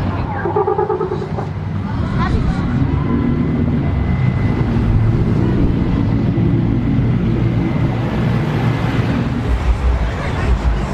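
A slow procession of pickup trucks and a Jeep driving past, their engines running steadily at low speed, with voices calling out over them.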